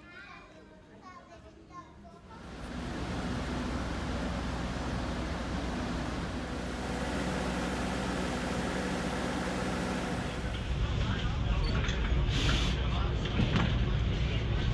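A diesel passenger train at a station: a steady low engine drone under a noisy din, setting in about two seconds in and growing louder later on. A short hiss of air comes near the end.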